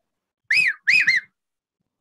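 A man whistling an imitation of the common hawk-cuckoo's (papiha, brain-fever bird) call: three short, arched whistled notes, the last two close together.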